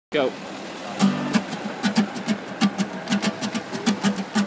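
A short spoken "go", then about a second in an acoustic guitar starts being strummed in a steady rhythm, about three to four strokes a second.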